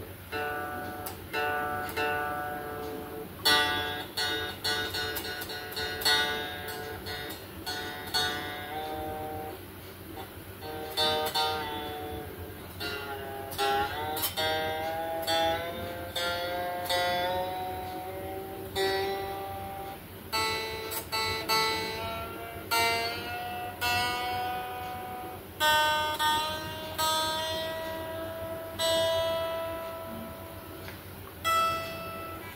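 Electric guitar with a Telecaster body and neck and a Stratocaster-style tremolo, played just after tuning to test the setup. A run of plucked single notes and chords rings and decays, and a few notes glide up and down in pitch around the middle.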